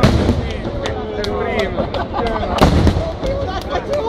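Aerial fireworks going off in a string of sharp bangs, about nine in all, the loudest a little past halfway, with people talking and calling out among them.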